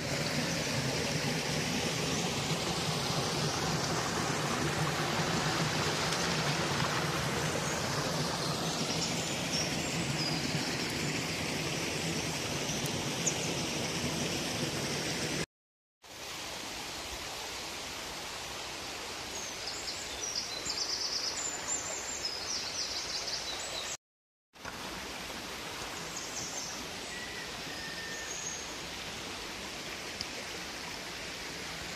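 A small mountain stream running over rocks, a steady wash of water. About halfway in, after a break, the water is fainter and small birds chirp now and then, with another short break near the end.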